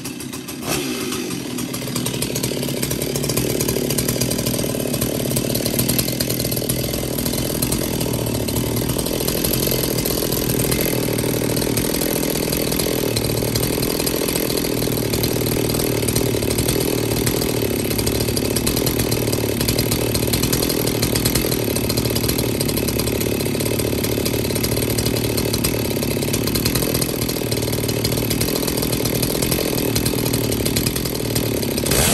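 Stihl MS 280 two-stroke chainsaw engine, running unloaded with bar, chain and clutch drum off, climbing in speed over the first couple of seconds and then held at a steady fast speed, around seven to eight thousand rpm, for an ignition timing check.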